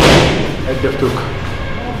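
A boxing glove punching a handheld focus mitt: one sharp smack right at the start that fades over a fraction of a second.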